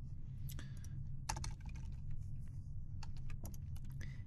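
Computer keyboard being typed on: scattered single keystroke clicks at an irregular pace, over a steady low hum.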